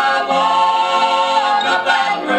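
Southern gospel vocal group singing in harmony, holding a long chord that changes near the end, played back from a 1969 vinyl LP.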